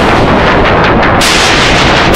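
A loud wall of heavily distorted, clipped noise with no tune or pitch left in it: a TV bumper's sound pushed through digital distortion effects.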